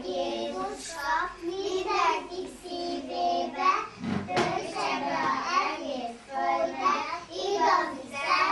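A group of young children's voices singing together in Hungarian, with a dull thump about four seconds in.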